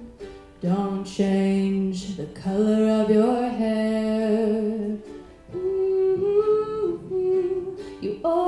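A woman singing a slow song in long held notes, accompanying herself on a strummed ukulele, with short breaks between phrases just after the start and about five seconds in.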